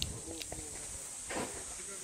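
Steady high-pitched drone of insects, with a faint voice in the background during the first second.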